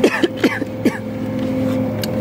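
Steady multi-tone hum of a supermarket refrigerated display case, with a few short throaty vocal sounds and package rustles in the first second.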